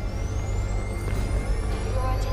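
Film soundtrack: dramatic music over a deep, steady rumble, with a thin high whine that rises steadily in pitch.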